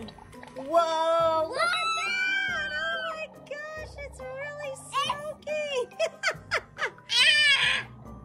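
Magic Mixies electronic toy cauldron playing its reveal sound effects: a magical tune with high, sing-song voice sounds that change pitch every fraction of a second, loudest near the end.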